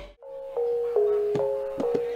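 Javanese gamelan playing: metallophone notes struck about every half second, each ringing on, coming in after a brief dropout at the start.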